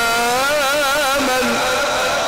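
A male Quran reciter's voice in melodic tajweed recitation, holding a long ornamented note with a wavering pitch that ends about one and a half seconds in.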